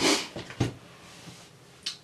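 Handling noises of old cameras and their cases. A short rustling swish, then a single knock about half a second in, and a faint brief tap near the end, as the next camera is reached for.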